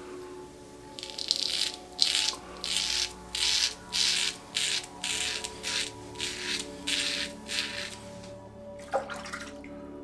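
Leaf Thorn safety razor with a Gillette Nacet blade scraping through lathered beard stubble on the cheek: a series of short rasping strokes, about two a second, starting about a second in and stopping near the end.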